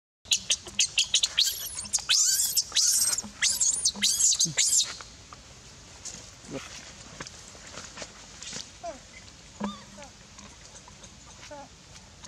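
A young macaque screaming: rapid, shrill, high-pitched cries for the first four to five seconds, then only a few faint short squeaks. These are the distress cries of a baby monkey.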